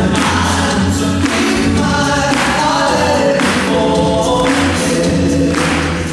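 Male a cappella group singing in close harmony through microphones, a steady low bass voice held beneath chords that change about once a second.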